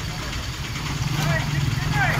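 Faint, indistinct voices over a steady low rumble that grows a little louder about a second in.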